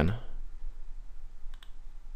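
A computer mouse button clicking once, faintly, about one and a half seconds in.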